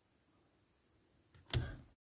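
Near silence, then a brief sudden sound about a second and a half in that fades within half a second.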